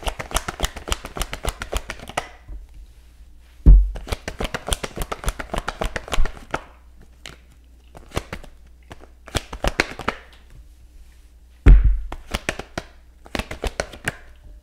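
A deck of tarot cards being shuffled by hand in several bursts of rapid card flicks, with two loud thumps, about four seconds in and again about twelve seconds in.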